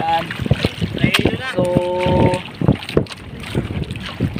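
Wind buffeting the microphone and choppy water around a small outrigger boat on a rough sea, with irregular knocks and slaps through it.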